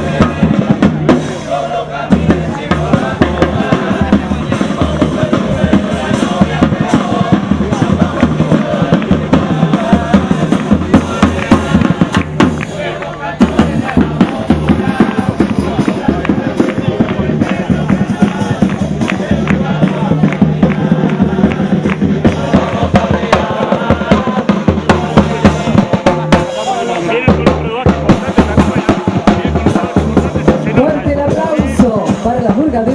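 Uruguayan murga percussion, bombo bass drum and redoblante snare drum, playing a steady driving carnival rhythm, with the murga chorus singing over it.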